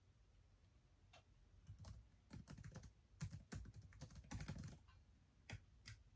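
Faint typing on a laptop keyboard: quiet keystroke clicks in uneven bursts, starting about a second in, busiest in the middle, with a couple of last keystrokes near the end.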